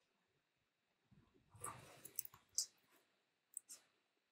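Faint rustling desk-handling noise about a second in, then a few sharp clicks of a computer mouse, the last two close together near the end.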